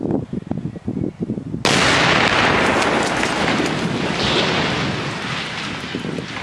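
Concrete water tower collapsing: low knocks and crackles, then about one and a half seconds in a sudden loud crash that carries on as a long noisy roar, slowly fading.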